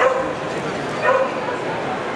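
A dog barking twice, two short high-pitched barks about a second apart.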